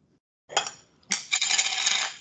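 Hard objects clinking and ringing: a short clink about half a second in, then a longer jangling ring from about a second in.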